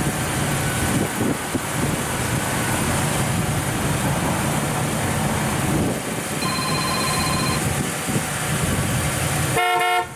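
1972 Oldsmobile Cutlass Supreme's 350 Rocket V8 idling steadily, with a short loud horn honk near the end.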